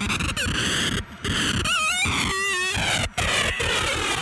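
Electronic music without a beat: a dense, noisy synthesizer texture that drops out briefly twice, with wavering, gliding pitched tones in the middle.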